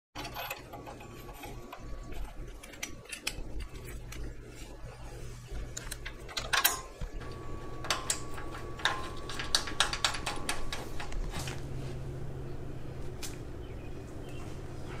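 Steel go-kart axle parts handled and fitted by hand: irregular metal clicks, clinks and knocks as a lock collar, bearing and hub are worked on the axle, busiest in a few clusters, some clinks ringing briefly. A low steady hum runs underneath.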